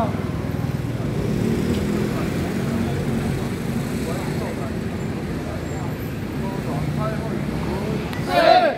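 Steady street background: a low hum of traffic with indistinct voices murmuring, and no drumming.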